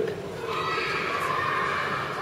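A high, drawn-out vocal sound from children, held and wavering for over a second, like a squeal or a long 'ooh'.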